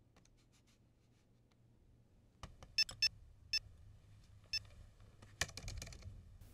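Near silence, then from about two and a half seconds in a few short, irregularly spaced clicks of laptop keys being typed on, a little faster near the end.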